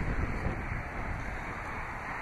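A steady low rumble with a hiss behind it, a little stronger in the first half second: outdoor background noise with wind on the microphone.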